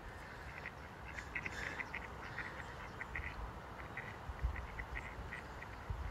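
Mallards calling faintly: an irregular run of short calls, several a second.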